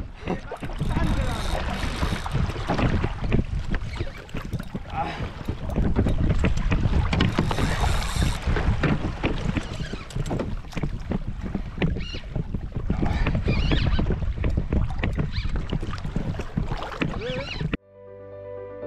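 Wind buffeting the microphone and water splashing around a sea fishing kayak, with faint indistinct voices; it cuts off suddenly near the end.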